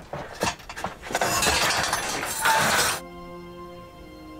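Film sound effect of a metal bridge collapsing and crashing down onto rocks: a dense clatter of falling metal, chains and debris with many sharp knocks. It stops abruptly about three seconds in, giving way to soft sustained music chords.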